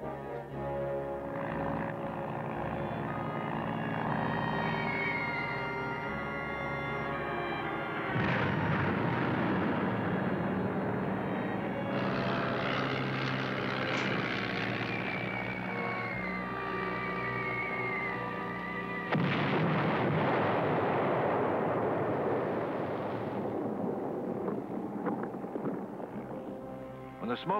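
Music with sound effects of an air bombing laid over it. A sudden surge of blast-like noise comes about 8 seconds in and another about 19 seconds in, the second preceded by a high, slowly falling whistle like a dropping bomb.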